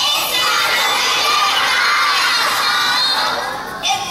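A large group of young children shouting and cheering together, many voices at once, dying down near the end.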